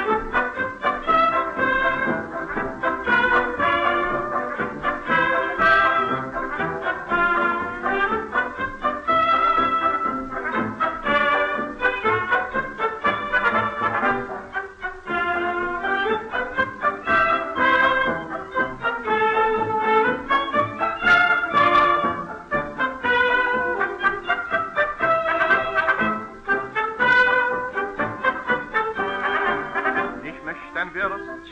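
Instrumental break of a 1938 German schlager dance-orchestra record, with brass (trumpet and trombone) carrying the tune between sung verses. The old recording has little treble.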